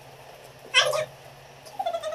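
Two short, high-pitched meow-like calls, the second weaker and about a second after the first.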